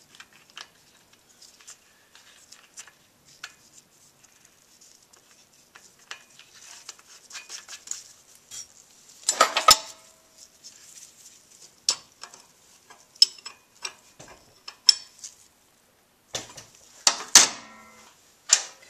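Small metallic clicks, clinks and scrapes of a gloved hand and tools handling and screwing the valve-adjustment cap back onto a Honda XR70R cylinder head, with a louder burst of clatter about halfway through and a few sharp clicks near the end.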